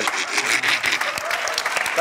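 Studio audience applauding: many hands clapping at a steady level.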